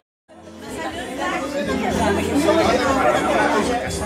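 Many people talking at once, overlapping conversation at a gathering, with music playing underneath. The sound drops out completely for a moment at the start, then fades back in.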